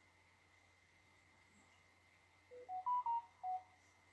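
A short electronic jingle of five clean beeps, stepping up in pitch and then back down, about two and a half seconds in, over a faint steady high-pitched hum.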